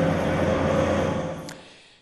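Dredging crane with a grab bucket running steadily on a barge: a mechanical noise with a low hum. It fades away over the second half.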